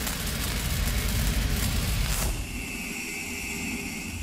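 Logo sting sound effect: a rushing, rumbling whoosh that eases off a little over two seconds in, leaving a quieter low rumble with a steady high whine.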